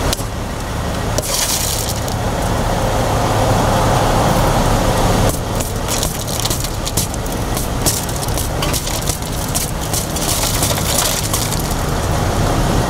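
A car's side window being smashed in with a tool: glass cracking and crunching, with many short sharp cracks from about the middle onward. A steady low engine hum runs underneath.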